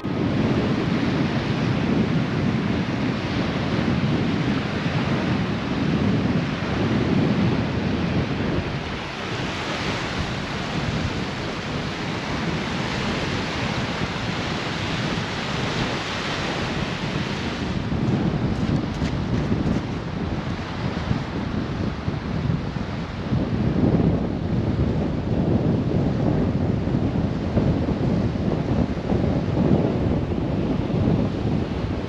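Strong wind buffeting the microphone over the wash of small waves on a sandy shore. The low gusty rumble eases for about ten seconds in the middle, leaving a higher, steadier hiss, then returns.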